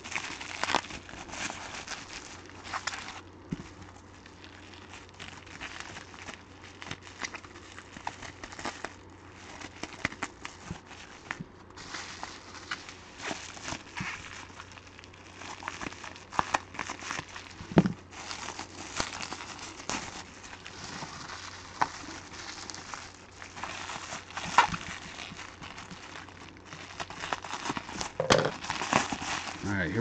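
Plastic bubble wrap crinkling and crackling as it is handled and unrolled, with scissors snipping through the packing tape and a few louder sharp snaps.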